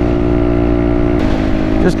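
Honda Grom's small single-cylinder engine running at a steady cruising speed, its pitch stepping slightly lower about a second in.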